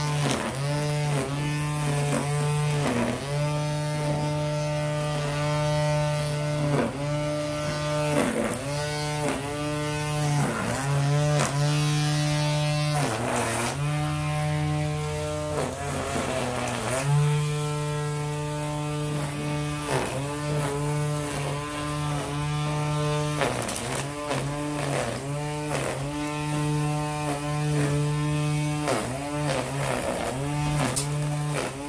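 Battery-powered string trimmer with an auto-feed line head, its electric motor running with a steady whine that sags in pitch and recovers about once a second, with a few longer dips. This is the trigger being released and squeezed again, which on this head feeds out more line.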